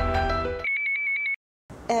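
A television programme's intro theme music ends, cut off about two-thirds of a second in, followed by a short electronic tone with a rapid trill, like a phone ring. Then comes a moment of dead silence before a voice begins.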